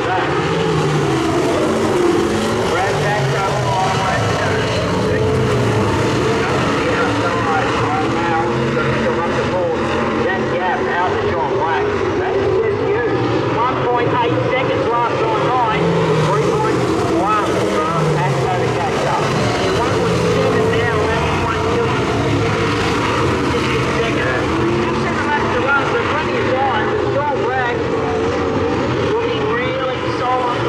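Several super sedans, V8 dirt-oval race cars, racing together: their engines rev up and ease off again and again as the cars go through the turns, many engine notes overlapping.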